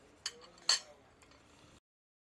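A fork clinking twice against a ceramic dish, the second clink louder. The sound then cuts off suddenly near the end.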